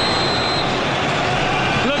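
Steady noise of a large stadium crowd during a penalty shootout. In the first half-second a short, high whistle note sounds, the referee's signal for the penalty kick.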